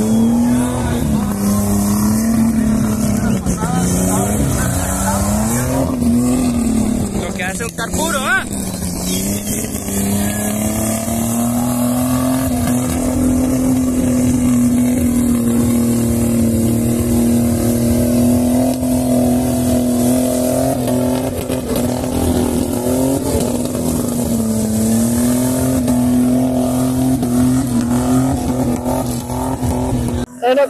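Off-road 4x4 race vehicle's engine running hard through deep mud. Its revs rise and fall through the first several seconds and drop briefly about eight seconds in, then hold steady and high for the rest.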